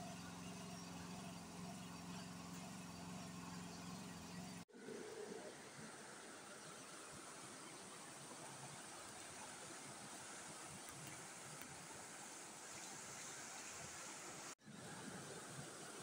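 Faint, steady rushing of fast-flowing brown floodwater from a river that has burst its banks, with two brief dropouts.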